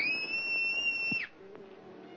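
A single high-pitched scream lasting just over a second: it shoots up in pitch at the start, holds one shrill note, then breaks off and falls away.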